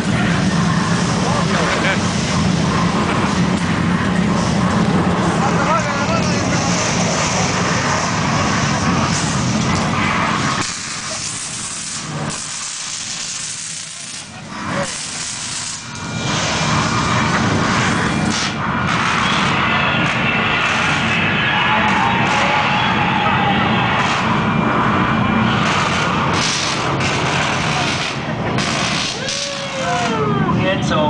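Simulated earthquake effects in a theme-park ride set: a continuous loud rumble and crashing din that drops quieter for about five seconds in the middle, then surges back with sparks hissing from the set.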